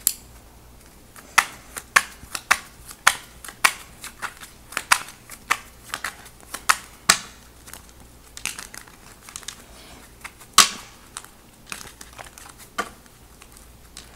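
A deck of tarot cards shuffled by hand, the cards snapping and slapping together in quick, irregular taps. One slap about three-quarters of the way through is louder than the rest.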